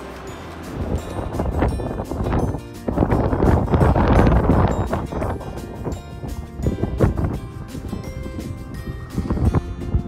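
Background music with wind buffeting the microphone in gusts, starting about a second in and loudest around the middle.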